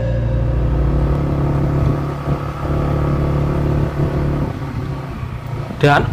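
A motor vehicle's engine running steadily with a low drone, a little quieter in the second half.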